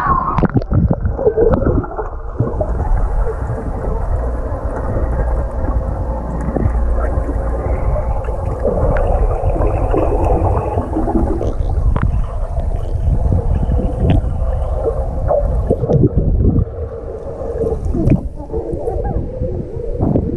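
Pool water heard through a submerged action camera: a muffled low rumble and gurgling with the highs cut off, broken by short faint knocks and clicks. Near the start and again near the end the sound turns brighter as the camera comes near the surface.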